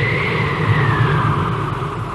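Cartoon sound effect of an aircraft flying past: a whining tone that rises slightly and then slowly falls over a low rumble, fading away.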